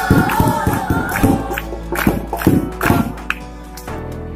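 A group of students singing together and clapping their hands; the singing tails off about a second in, and the clapping carries on, stopping shortly before the end.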